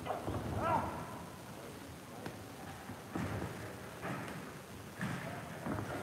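Boxing sparring: dull thuds of gloved punches and footwork on the ring canvas, about once a second, over low gym room noise. A brief faint voice is heard about half a second in.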